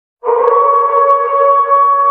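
A single long held note, steady in pitch, starting a moment in after a brief silence.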